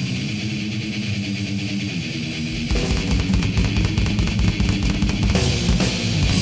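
Grindcore recording with distorted electric guitar and drums: a sparser guitar passage, then about two and a half seconds in the full band comes in with fast drumming.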